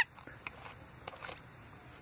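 Bird chirps: one sharp high chirp at the very start, then a few faint, short chirps.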